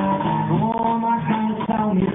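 Live romantic brega song: acoustic guitar and cajón accompanying a man singing long held notes into a microphone.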